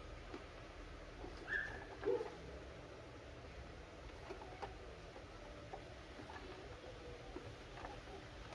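A cardboard toy box being handled: two short squeaks of cardboard rubbing on cardboard, about one and a half and two seconds in, as the outer sleeve slides, then light taps and rustles of fingers on the box.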